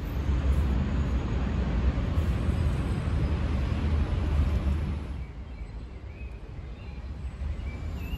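Outdoor background noise: a steady low rumble with a hiss over it that eases about five seconds in.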